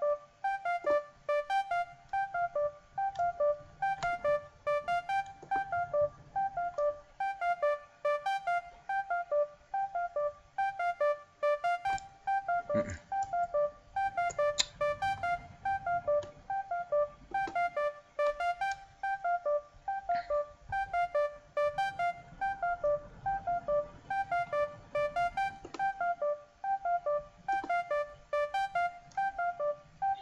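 Trap beat playing back from FL Studio: a keyboard-like synth lead repeating a short riff of mid-range notes, about three a second, over a faint low bass, with a few sharp clicks.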